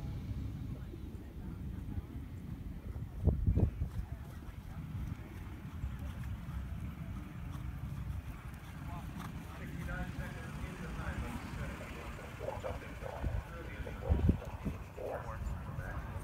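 Outdoor background with a steady low rumble and faint distant voices. Two brief loud thumps come about three and a half seconds in and again near the end.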